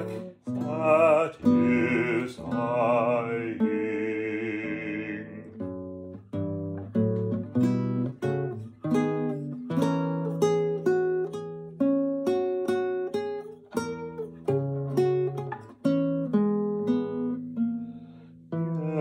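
A man sings held notes with a wide vibrato over a classical guitar for about the first five seconds. Then the guitar plays alone: plucked notes and chords in a steady rhythm, each one ringing and fading.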